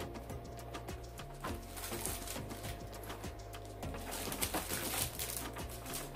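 Scissors snipping and clicking and plastic wrapping crinkling as a cardboard cosmetics box is cut open, a quick irregular run of small clicks with louder crackly rustling in the middle, over soft background music.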